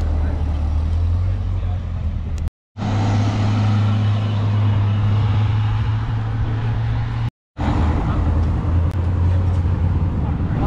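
A vehicle engine running steadily with a low hum as cars drive slowly past. The sound cuts out completely for a moment twice, a little over two seconds in and again about seven and a half seconds in.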